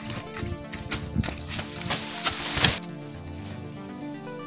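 Background music over irregular footsteps and the rustle of tall grass being pushed through, which swells in the middle and stops abruptly about three-quarters of the way in.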